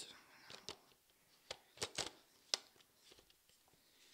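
A Canon EOS 700D DSLR clicking as it is operated by hand: about six sharp, separate mechanical clicks at uneven intervals, the loudest about two and a half seconds in, as the mirror flips and the controls are worked.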